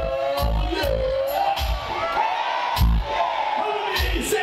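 Hip-hop beat with a heavy, regular kick drum and crisp hi-hats played over a concert PA, with a wavering amplified vocal line over it and crowd noise underneath.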